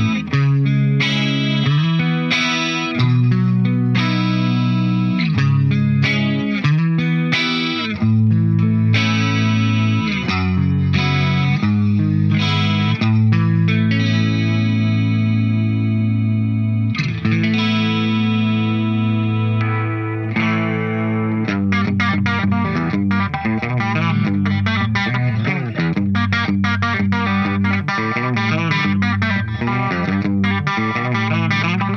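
Charvel Pro-Mod Relic San Dimas electric guitar played through the clean solid-state channel of an ADA MP1 preamp, with a Boss CE-5 Chorus Ensemble: ringing single notes and chords. From about 21 seconds in, the playing turns to fast, busy picking.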